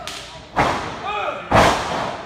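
Two heavy thuds about a second apart as a wrestler is slammed onto the wrestling ring's canvas, the second the louder, ringing briefly in the hall. Crowd voices call out around them.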